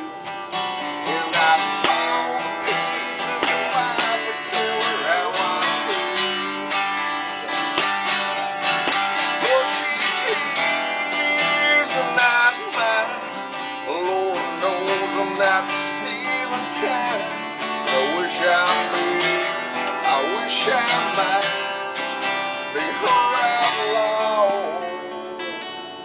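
Acoustic guitar strummed continuously through an instrumental break in the song, with a wavering melody line over the chords.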